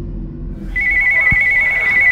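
Electronic telephone ringer trilling: a rapid warble between two close high pitches, starting about a second in over a low drone.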